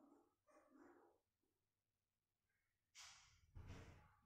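Near silence: room tone in an empty room, with a few faint indistinct sounds in the first second and a short, louder noise about three seconds in.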